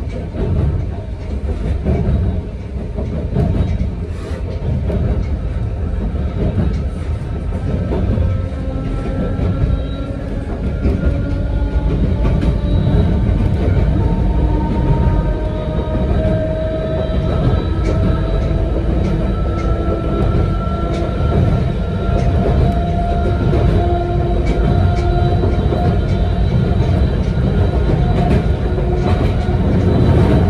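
Interior of a narrow-gauge (762 mm) Yokkaichi Asunarou Railway electric railcar running along the line: a steady rumble of wheels and body with scattered clicks over the rail joints. About a third of the way in, a motor whine comes up and rises slowly in pitch.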